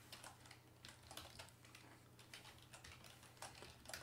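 Faint keystrokes on a computer keyboard, about half a dozen separate key presses as a password is typed.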